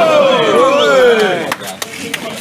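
Several men shouting at once, and a few sharp smacks near the end: boxing-glove blows landing.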